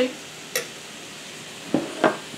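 Two light clicks of a metal spoon against a stainless steel skillet as softened butter is scraped into the pan, over a faint steady hiss.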